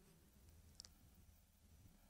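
Near silence: room tone with a faint low hum, and one faint short click a little under a second in.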